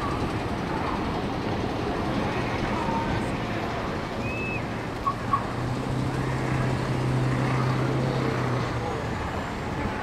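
Steady outdoor rumble of distant engines, with a low hum that swells about halfway through and fades again near the end.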